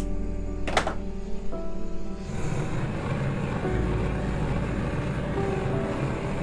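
Background music with sustained notes. From about two seconds in, a gas torch flame roars steadily as it heats the silver vessel to anneal it, softening the work-hardened metal so it can be worked again.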